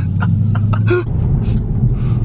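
Car engine and road drone heard inside the cabin while driving: a steady low hum that rises in pitch about a second in as the engine speeds up.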